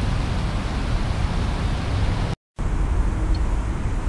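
Steady outdoor background noise: a low rumble with hiss over it, with no distinct event in it. It cuts out to silence for a moment just past halfway, then resumes unchanged.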